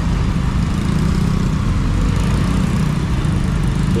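Yamaha scooter's engine running as it rolls slowly through traffic, a steady low rumble with road noise.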